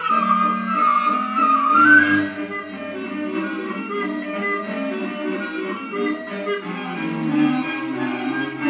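Orchestral film score from a 16mm print's optical soundtrack, played through a Bell & Howell projector: a wavering high melody over sustained low notes for the first two seconds or so, then low held chords.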